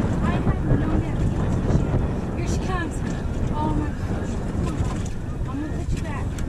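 Wind buffeting the microphone on an open boat, a steady low rumble, with short snatches of a woman's voice breaking in now and then.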